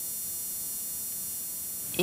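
Steady electrical buzz and hum with a thin high-pitched whine, unchanging throughout: playback noise of a videotape transfer over a blank stretch of tape.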